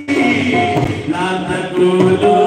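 Live vocal music: a singer holding and bending a melodic line over instrumental accompaniment, after a brief break at the very start.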